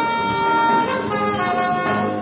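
Live instrumental jazz band with a horn section: a long held high horn note breaks off a little under a second in, then shorter horn notes follow over drums, bass and percussion.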